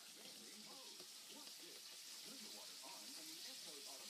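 Near silence: faint, distant voices over a steady hiss.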